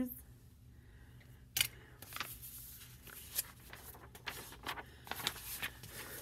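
Quiet handling sounds: a single sharp snip of small scissors about one and a half seconds in, then light rustling and small clicks of paper being handled as a picture book's page is turned near the end.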